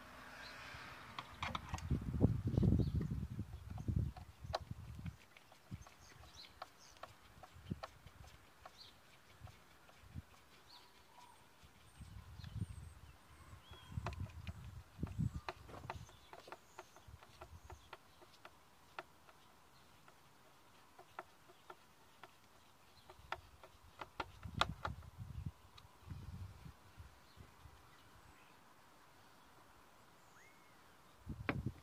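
Plastic air filter housing lid on a Citroën DS3 being refitted and its screws tightened with a ratchet: scattered small clicks and knocks of tool and plastic, with three spells of duller, low handling bumps.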